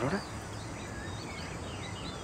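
Small birds chirping in a string of short, quick high notes over steady outdoor background noise.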